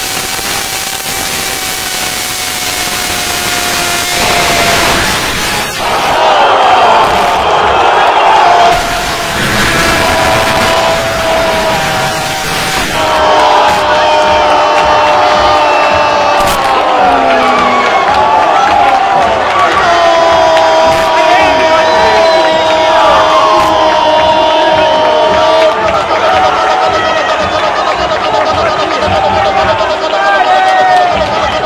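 Radio football commentator's goal cry: a long drawn-out shout held for several seconds at a time, with short breaks for breath, over a cheering stadium crowd. It marks a goal just scored.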